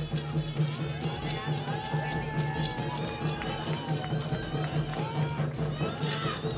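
Live Jharkhand folk music for a dance: a voice singing long, gliding held lines over a steady low drone and a rhythmic beat, with rapid sharp clicks running through it.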